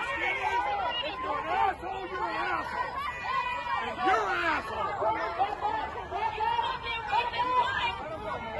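Several voices talking and shouting over one another in a heated argument, one man yelling.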